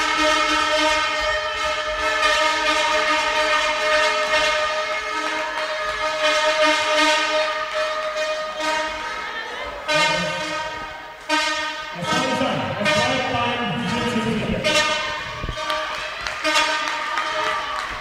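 A steady, held horn-like tone with several overtones sounds through most of the stretch. Sharp knocks come in from about six seconds on, with a rougher, lower noise in the second half.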